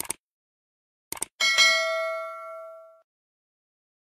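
A short click, then two quick clicks about a second in, followed at once by a single bright bell ding that rings out and fades over about a second and a half: the mouse-click and notification-bell sound effects of a subscribe-button animation.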